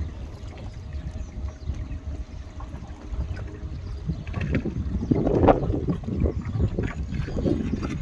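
Outdoor wind buffeting the microphone in a steady low rumble, growing louder for a stretch about five to six seconds in.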